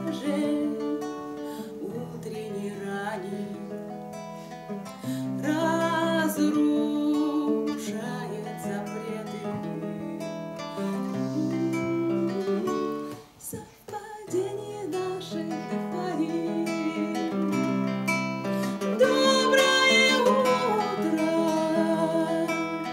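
Live bard song: a woman's voice singing over an acoustic guitar. The playing stops briefly about thirteen seconds in, then resumes.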